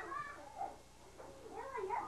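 Meowing: several high, gliding meow calls, with a short lull about a second in before they start again.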